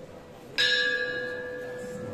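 A small hanging metal bell struck once with a handheld striker about half a second in. It rings on with several clear tones that slowly fade.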